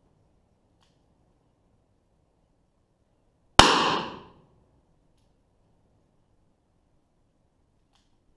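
A single shot from a Smith & Wesson Governor revolver firing Federal American Eagle ammunition, about three and a half seconds in. It is loud and sharp, and its echo dies away in under a second.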